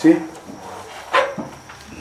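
A man's voice says one word, then pauses in a small room; a little over a second in comes one short, sharp noise.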